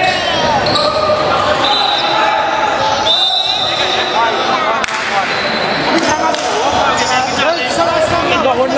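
Basketball game play on a wooden gym floor: a ball bouncing, with players' voices calling out throughout and two brief high-pitched steady tones a couple of seconds in.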